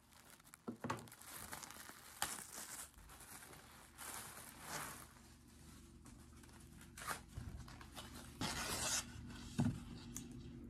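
Florist's wrapping paper rustling and crinkling in irregular bursts as rolls are handled, cut with scissors and unrolled, with a few sharp clicks; the loudest rustle comes near the end.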